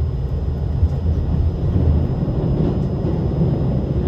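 Running noise heard inside the carriage of a JR Central 383 series limited express train in motion: a steady low rumble of the wheels on the rails, with a few faint clicks.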